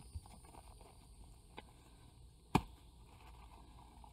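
A plastic nursery pot being handled as a plant is worked out of it: a faint tap about one and a half seconds in, then a single sharp knock about a second later, over a quiet background.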